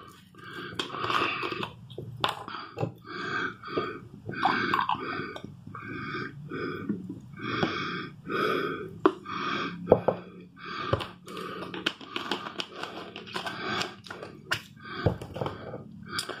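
Carbonated lemonade being poured from a bottle into a glass: a long run of short, uneven glugs and splashes with fizzing.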